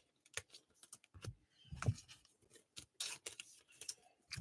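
Faint clicks and short slides of baseball trading cards being handled and stacked by hand, with a soft knock a little under two seconds in.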